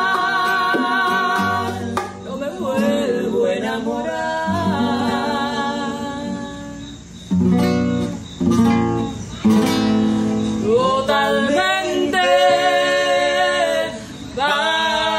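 Live acoustic music: a woman singing a ballad over acoustic guitar. About halfway through her voice pauses and a few strong strummed guitar chords sound, then the singing resumes.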